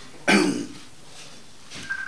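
A man coughs once, a short cough about a quarter second in, followed by quiet room tone.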